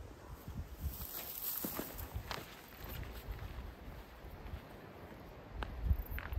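Footsteps on a gravel and dirt mountain trail: irregular walking steps with soft thumps and occasional sharper scuffs.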